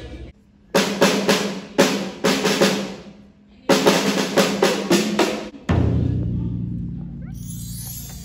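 Percussionist playing snare and marching drums: a group of sharp strokes, a short pause, then a fast run of strokes. About six seconds in a deep bass drum note rings out and slowly fades, with bar chimes shimmering over it near the end.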